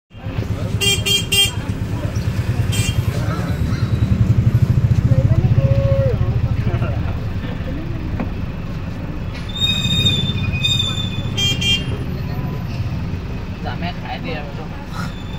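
Street traffic heard from a moving vehicle: a steady low engine and road rumble, loudest around the middle, with short vehicle horn toots, three quick ones about a second in, another near three seconds, and several more around ten to twelve seconds.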